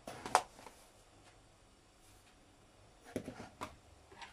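A metal spoon clicking and scraping against containers while sugar is spooned into a jug of kefir, in two short bursts: once at the start and a quicker cluster of clicks about three seconds in.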